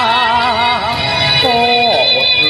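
A singer sings a Thai song over a karaoke backing track: one held, wavering note, then, after a short break about a second in, a second note that drops in pitch near the end.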